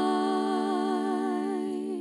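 Three young female voices holding the song's final chord in close harmony: one long, steady vowel with a gentle vibrato.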